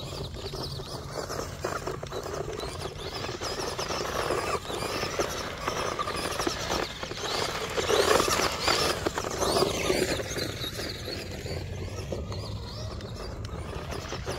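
1/18-scale LaTrax Teton RC truck's electric motor and drivetrain whining as it drives over dirt, running on three wheels after losing one; loudest as it passes close by about eight seconds in.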